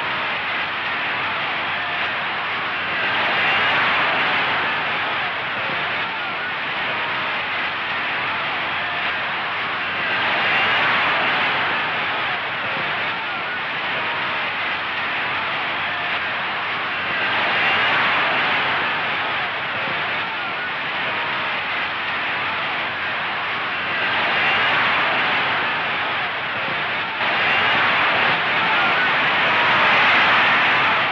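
A steady roaring noise with no clear tones, swelling louder for a second or two about every seven seconds.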